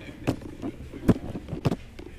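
Handheld GoPro being knocked and rubbed by a child's hands: about six irregular sharp bumps in two seconds over faint room background.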